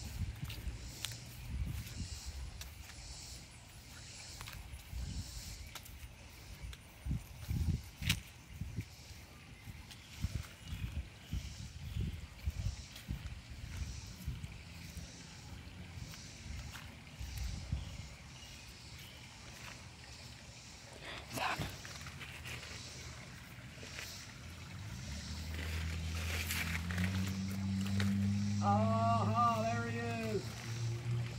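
Footsteps on grass and the rustle of brushing through shrubs, with knocks and scuffs from the handheld phone as it is carried. Near the end a low steady hum builds up, with a brief wavering voice-like sound over it.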